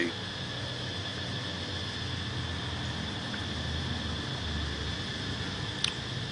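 Steady outdoor background: a low rumble under a thin, high, unbroken whine, with no distinct events.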